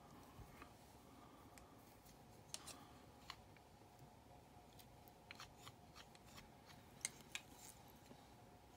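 Faint, scattered snips and clicks of small fly-tying scissors trimming a silicone rubber leg, with a couple of slightly louder snips near the end.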